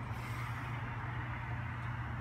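A steady low hum with an even hiss behind it: background noise with no distinct event.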